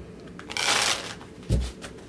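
Tarot cards being handled: one short papery swish of a card about half a second in, with dull low bumps on the cloth-covered surface just before it and about one and a half seconds in.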